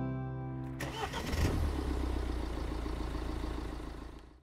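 A strummed acoustic guitar chord rings out and fades. About a second in, a car engine starts and runs steadily as a sound effect, fading near the end.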